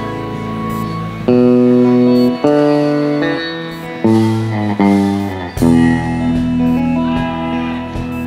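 Live band playing a slow instrumental passage: electric guitar holding long sustained melody notes, moving to a new note every second or so, over keyboards and bass.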